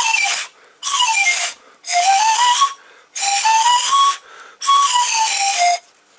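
Homemade pan pipes made of drinking straws, blown in five breathy runs of stepped notes across the pipes: two scales going down, two going up, then one going down again.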